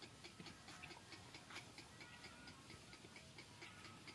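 Faint, rapid, regular ticking, about six clicks a second.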